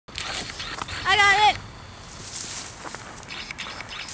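An animal's single call, about a second in and lasting about half a second, over rustling outdoor background noise.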